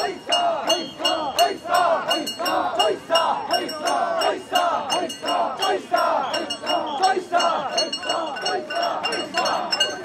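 Mikoshi bearers chanting together in a rhythmic shout, about two calls a second, as they carry the portable shrine. Metal fittings on the shrine clink and jingle in time with the chant.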